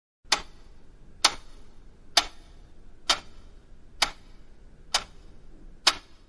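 A clock ticking slowly: seven sharp, evenly spaced ticks just under a second apart, over faint background noise.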